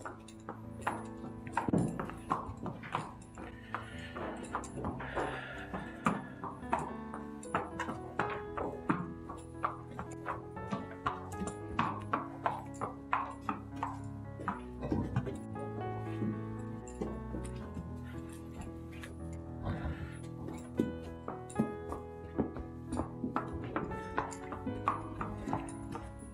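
Background music with the clip-clop of horses' hooves walking on a concrete barn floor, a few hoof strikes a second.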